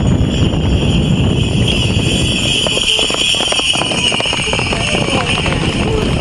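Hoofbeats of a pair of horses galloping side by side on a dirt track, loudest about halfway through as they pass close.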